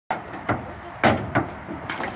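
A horse's hooves knocking on the floor of a horse trailer as it backs out step by step: about five separate knocks, the loudest about a second in.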